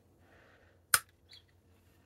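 Blade of a single-blade slipjoint pocket knife (Great Eastern Cutlery #36 toenail clipper) being pinched open and snapping into place on its backspring. One sharp click about a second in, then a faint tick just after.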